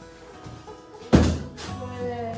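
A cardboard box set down hard on the floor: one loud thunk about a second in, over background music.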